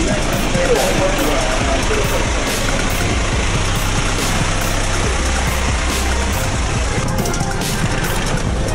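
A vehicle engine idling amid steady street and traffic noise.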